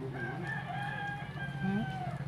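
One long, steady animal call held for nearly two seconds, with a short rising call near the end, over a low steady hum.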